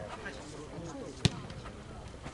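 A football struck once during a footnet rally: a single sharp thud about a second in, over faint voices of players.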